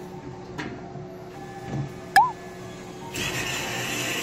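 Arcade claw machine working: a sharp click with a brief chirp about two seconds in as the claw closes, then the crane motor whirring from about three seconds in as the claw lifts its grip. Faint arcade music underneath.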